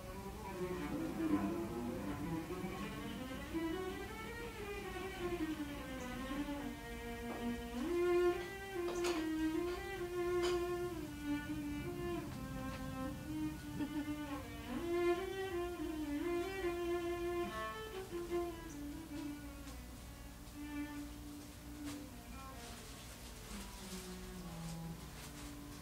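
Instrumental music: a slow melody on a bowed string instrument, sliding between some notes and holding others.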